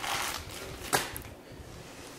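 Paper rustling as a book is handled, with one sharp click about a second in.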